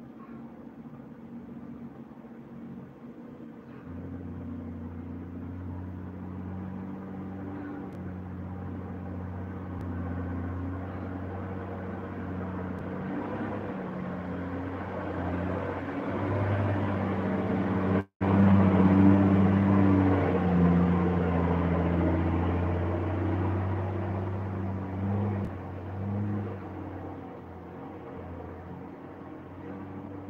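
A motor or engine hum that grows louder toward the middle and fades again near the end, with a brief cut-out just past halfway.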